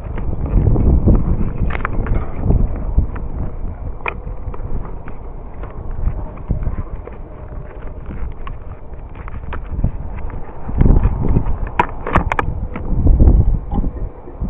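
Wind buffeting the microphone in gusts, with scattered clicks and knocks of hands and tools on the dish's metal mount and fittings. A cluster of sharper clicks comes near the end.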